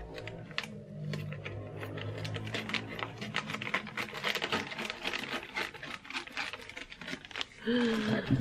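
Scissors snipping through a clear plastic bag, with the plastic crinkling and crackling as it is held and cut.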